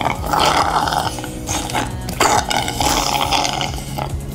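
Iced matcha latte being slurped through a straw from a cup of ice: two noisy sucking pulls, the first about a third of a second in and the second just past the middle.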